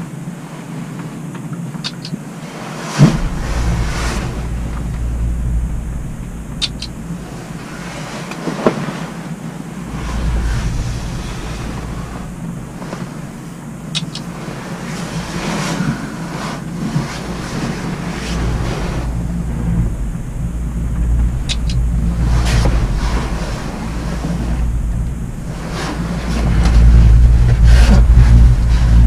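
Low rumble and hiss inside a cable car cabin as it rides down the line, coming in waves and growing louder near the end, with a few sharp clicks.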